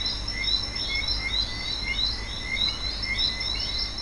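Outdoor nature ambience of chirping animal calls, short chirps repeating about three times a second over a steady high-pitched trill and a low rumble.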